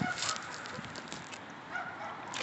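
Husky puppy giving a couple of soft, short, high whines, one just after the start and one near the end.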